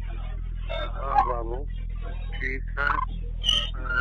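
A faint, indistinct voice on a recorded telephone call, thin and muffled by the phone line, over a steady low electrical hum.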